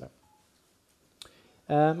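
A man speaking, broken by a near-silent pause that holds a faint short beep and then a single sharp click a little over a second in, from a handheld slide remote as the projected slide is advanced.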